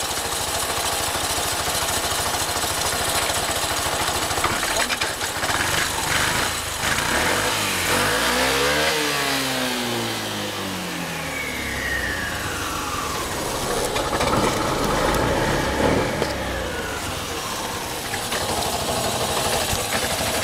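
Piaggio X9 250 scooter engine idling with an even exhaust beat. It is revved up and back down once about eight seconds in, and more lightly again around fifteen seconds.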